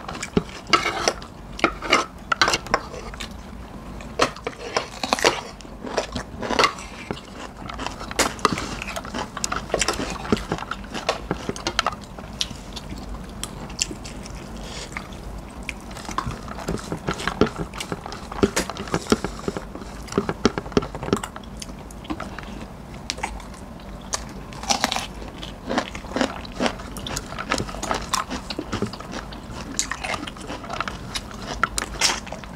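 Eating at close range: chewing and mouth sounds mixed with a metal spoon clinking and scraping on ceramic plates, many short sharp clicks throughout.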